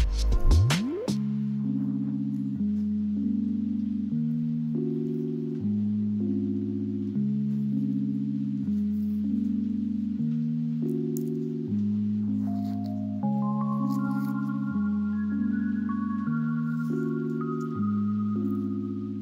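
Background music: soft sustained chords that change about every second and a half, opening with a short rising sweep, with a higher melody of single notes coming in about two-thirds of the way through.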